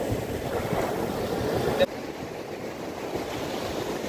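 Sea surf washing foamy water up a sandy beach, with wind noise on the microphone. The level drops abruptly a little under two seconds in, and the surf continues quieter.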